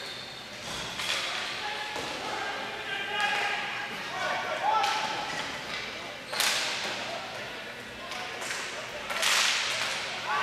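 Ball hockey game sounds in an echoing indoor rink: sharp cracks of sticks hitting the ball and the ball striking the boards, the loudest about six seconds in and again near the end, over players' and spectators' voices.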